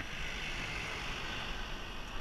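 A red songthaew pickup truck passing close by, its engine and tyre noise swelling from about half a second in, over a rushing background of wind on the microphone.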